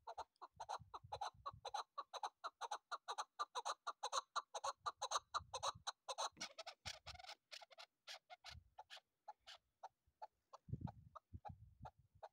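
Caged chukar partridge calling, a fast run of short repeated chuk notes, about four a second, that thins out to scattered notes after about seven seconds. A few low rumbles come in under the calls.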